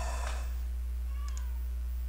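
Steady low electrical hum, with a few faint computer keyboard keystrokes and a brief faint high-pitched tone that slides down a little more than a second in.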